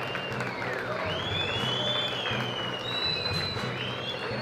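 An audience applauding, with the noise of a crowd, while faint music with a high, gliding melody plays over it.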